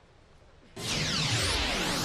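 Television ident jingle: about three-quarters of a second in, a loud whoosh with several pitches sweeping up and down at once sets in over music.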